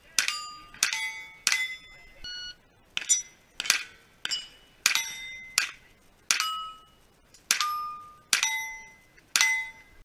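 A pistol firing a steady string of about a dozen shots, roughly one every 0.7 seconds. Most shots are followed by the bright, fading ring of a steel target plate being hit.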